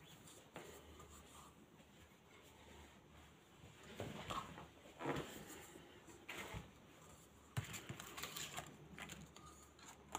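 Faint rustling and a few light knocks from craft materials and small objects being handled and moved, over quiet room tone; the handling starts about four seconds in.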